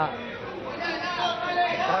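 Speech only: men's voices talking, with background chatter.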